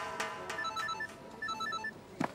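Mobile phone ringing: an electronic ringtone of quick high beeps, in two short runs about a second apart.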